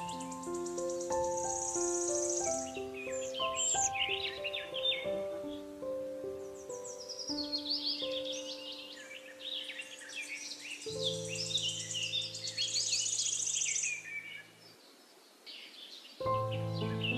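Slow, soft piano melody with forest birdsong, many chirps and quick trills, laid over it. Late on, the tune gives way to a low held chord, and the sound thins out to a quiet lull shortly before the end.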